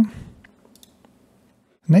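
A few faint computer mouse clicks, about half a second to a second in.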